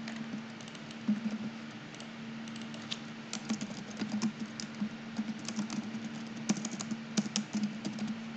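Typing on a computer keyboard: irregular runs of keystroke clicks, over a steady low electrical hum.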